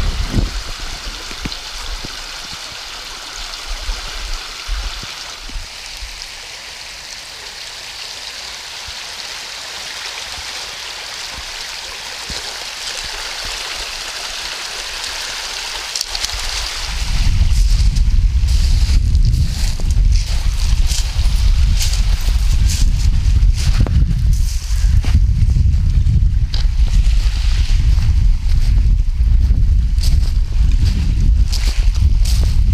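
A small freshwater stream runs over pebbles into the sea with a steady rush of water. About seventeen seconds in, heavy, gusting wind buffets the microphone and a loud low rumble takes over.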